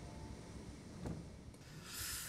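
Quiet low rumble of room tone, with one faint soft rub about a second in.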